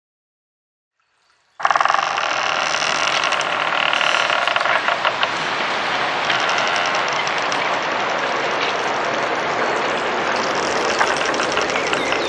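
Synthesized soundtrack texture that cuts in suddenly after a couple of seconds of silence: a dense, loud hiss laced with ringing high tones and fine crackling clicks.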